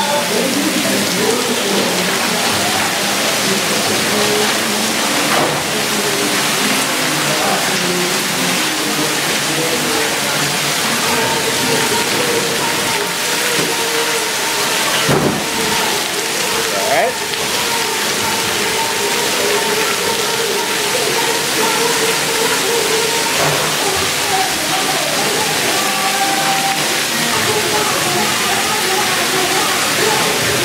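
Water jets spraying and falling steadily onto the splash pad of a water play area, with people's voices in the background.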